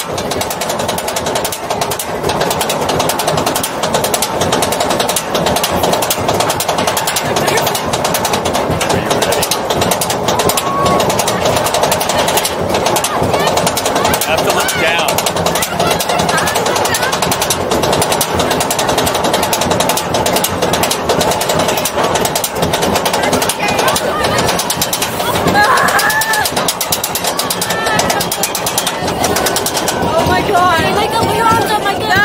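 Roller coaster chain lift: a steady, rapid clatter of the lift chain and anti-rollback ratchet as the train climbs the lift hill, with riders' voices and a few shouts over it.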